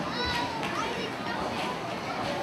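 Background chatter of many voices in a crowded hall, children's voices among them, with one voice standing out briefly just after the start.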